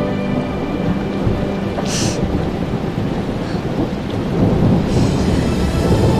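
Heavy rain pouring down with thunder rumbling, and a sharp crack about two seconds in. Soft music lies underneath, fading out at the start and coming back near the end.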